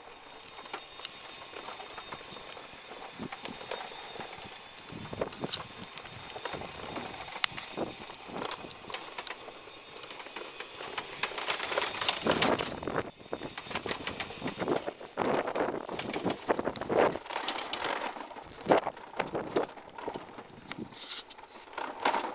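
Electric scooter being ridden on an asphalt road: rolling road noise with irregular clicks, knocks and rattles, getting louder about halfway through.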